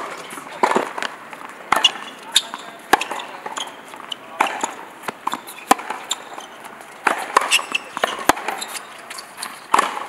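Tennis ball struck by rackets and bouncing on a hard court during a rally. It gives about eight sharp pops, roughly one every second or so.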